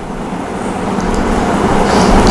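Steady background rumble and hiss that grows slightly louder.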